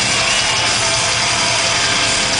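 Live metal band playing loudly through a concert PA: a dense, steady wall of distorted electric guitar, recorded from within the crowd.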